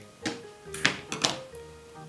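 Soft background music with held notes, with about three short taps and knocks from craft pieces and tools being handled on the work surface.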